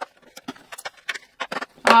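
A stiff cardboard advent calendar door being worked open by hand: a quick run of small clicks, scrapes and rustles of card.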